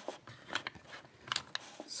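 A euro-cylinder lock being handled and lifted out of a metal bench vise: a scattered series of short, sharp metallic clicks and clacks.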